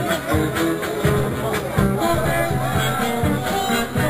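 Processional band music with a steady beat, playing under the voices of the crowd.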